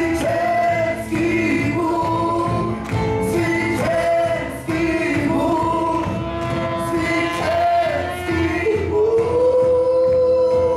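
Live worship band with keyboard, drum kit and guitar playing a worship song while voices sing long held notes over it; near the end the melody rises to one long sustained note.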